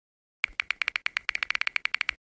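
Typing sound effect: a quick run of crisp keystroke clicks, about eight or nine a second, starting about half a second in, as the caption text appears.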